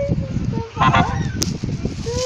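A baby's high-pitched squeals and babble, sliding up and down in pitch and loudest about a second in, with a short click near the end.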